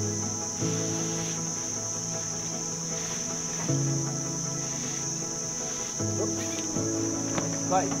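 A steady, high-pitched insect drone, like crickets or cicadas, runs under background music made of long held chords that change every few seconds.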